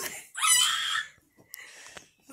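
A child's short, high-pitched scream, lasting under a second, near the start, followed by a faint click.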